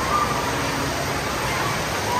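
Steady rush of splashing and falling water with the echoing hubbub of an indoor water park, faint distant voices calling out now and then.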